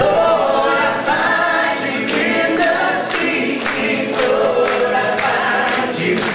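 A worship song sung by many voices together, with little instrumental backing.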